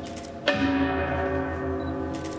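A struck metal percussion instrument of Korean Buddhist ritual music, hit once about half a second in and left to ring. Its long, steady, many-toned ring lies over the fading ring of the previous stroke.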